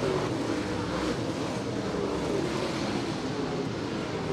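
A pack of dirt late model race cars running together on a dirt oval, their V8 engines blending into steady, continuous engine noise with several pitches drifting up and down as the cars power through the turn.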